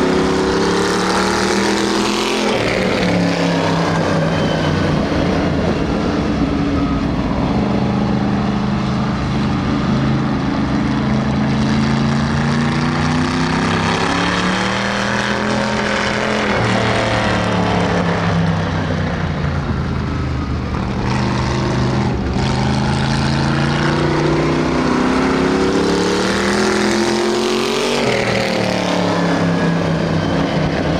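Vintage dirt-track race car's engine running hard as it laps the oval: the pitch climbs down the straights and drops as the driver lifts for the turns, in a cycle of roughly thirteen seconds. The car sweeps close by three times: a few seconds in, around the middle, and near the end.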